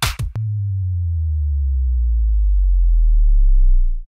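A last couple of electronic drum hits, then a deep sine-like synth bass tone that slides slowly downward in pitch and swells steadily louder for over three seconds before cutting off abruptly.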